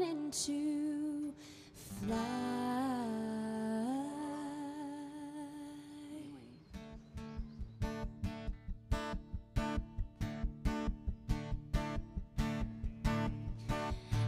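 A live country-pop song: a wordless female vocal line held and gliding between notes for the first half, then an acoustic guitar strummed in a steady rhythm of about three strokes a second.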